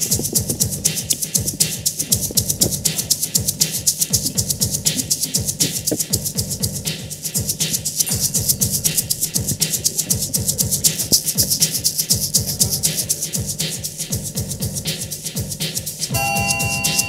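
Instrumental intro of a live acoustic band song: an egg shaker keeps a quick, steady rhythm of about four to five strokes a second over guitar, bass guitar and keyboard.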